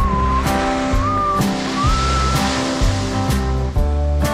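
Background music: a whistled melody over steady bass notes and a regular beat, with a soft hissing swell in the middle.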